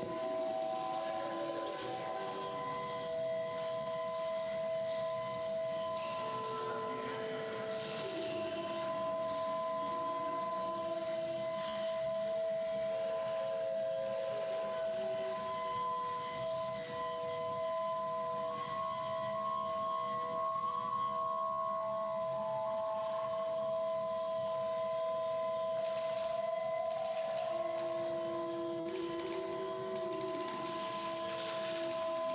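Ambient drone music: several sustained tones held together, with slower notes in a lower range entering and changing pitch over them. It is the soundtrack of an art installation.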